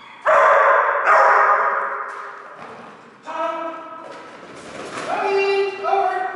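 A dog barking excitedly as an agility run starts: two loud, harsh barks in the first second and a half, then longer, higher barks about three seconds in and again about five seconds in.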